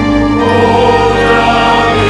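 Mixed SATB choir singing a hymn in Twi, holding sustained chords that change about half a second in.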